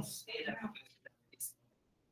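Quiet, whispered speech trailing off over the first second, with one short hissing sound a little past the middle.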